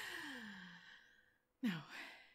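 A woman's long, breathy sigh that falls in pitch and fades out over about a second.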